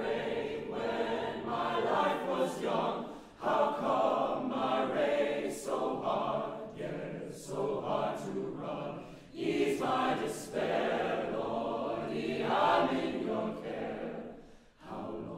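Mixed chamber choir singing a choral arrangement in phrases, with crisp sibilant consonants; the sound drops briefly between phrases about three seconds in and again near nine seconds.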